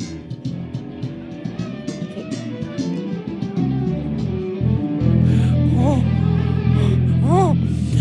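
Amplified electric bass guitar: plucked low notes, then from about five seconds in a loud low note held steady, the signal that drives the bass shaker platform. A man's short rising-and-falling 'oh' sounds come over it twice near the end.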